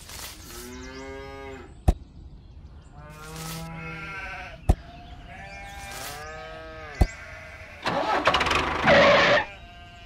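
Bleating animal calls, three of them, each a second or so long and wavering in pitch, with a sharp click after each. A loud burst of noise follows near the end.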